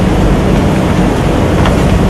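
Steady, loud rushing background noise with a low hum under it, unchanging throughout, with no distinct clicks or knocks.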